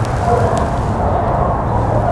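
Steady low background noise with no clear pitch and no distinct events.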